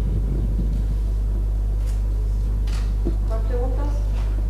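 Steady low electrical hum, mains hum picked up through the press-room microphone system. A faint, distant voice murmurs briefly near the end.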